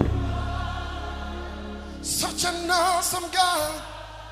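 Live gospel worship music: a deep, sustained low note sounds from the start, and about halfway through voices come in singing held notes with a clear vibrato.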